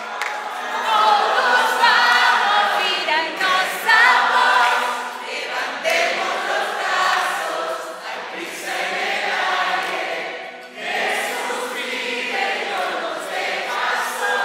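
A large group of young people singing a song together in chorus.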